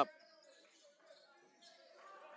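A basketball being dribbled on a hardwood gym court, faint under the hall's general game noise.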